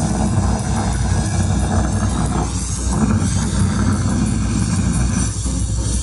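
Live hardcore punk band playing loud and without a break: electric guitar, bass and drums in a dense wall of sound.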